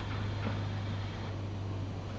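The soundtrack of a river video played through a hall's loudspeakers: a steady low drone over a hiss of noise.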